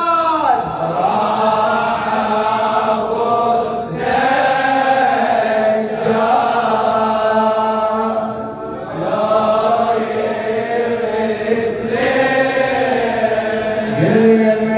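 A radood, a Shia Husseini eulogy reciter, chanting an Arabic latmiya into a microphone, holding long, bending melismatic notes. The phrases break briefly about four seconds in and again after eight seconds.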